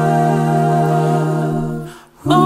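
Six-man male a cappella group singing a hymn, holding one long chord in close harmony with a steady low bass note under it. The chord fades out near the end.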